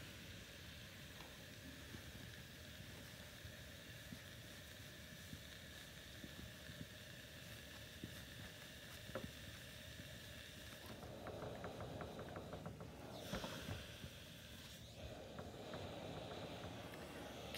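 Faint handling sounds on an ironing board: fabric and a cardboard template being shifted, with a few light clicks. In the last few seconds a soft hiss rises as a steam iron is pushed over the fabric.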